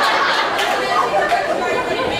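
Several people talking over each other at once: a blur of overlapping voices in a crowded room.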